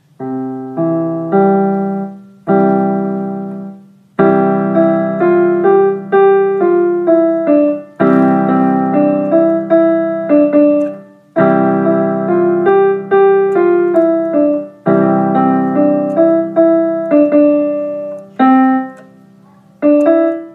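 A piece played on piano: a melody of single struck notes over held low chords, in phrases a few seconds long with short breaks between them.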